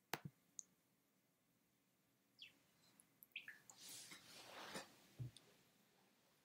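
Near silence broken by a few faint clicks, three close together at the start, then scattered soft rustling noises and one low thud about five seconds in.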